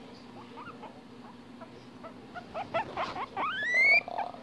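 Guinea pig wheeking: short squeaks at first, building into a run of louder whistles that each rise in pitch near the end.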